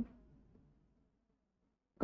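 Near silence: room tone between spoken phrases, with only the clipped end of a word at the very start.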